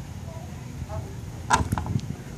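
Low, steady wind rumble on the microphone, with a quick run of three or four sharp clicks about one and a half seconds in.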